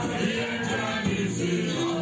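A church congregation singing a worship song together, many voices holding long notes in chorus.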